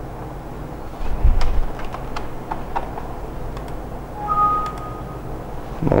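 A few scattered, sharp computer keyboard and mouse clicks over a steady low room hum, with a low thump about a second in and a brief faint high tone a little after four seconds.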